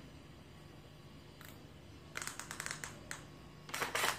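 Small hard plastic clicks from a Makita DF311 cordless drill being handled: a quick run of clicks about two seconds in, one more just after, and a couple more near the end, over a faint low hum.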